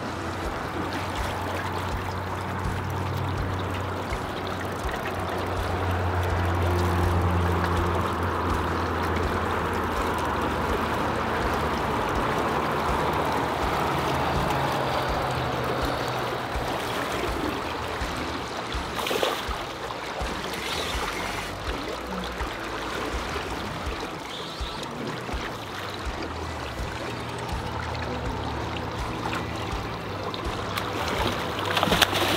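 River water rushing and trickling around a drift boat's hull as a steady wash, with one brief knock about two-thirds of the way in.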